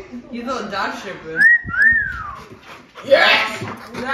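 A person's two-part wolf whistle about a second and a half in: a short rising note, then a second note that rises and falls away.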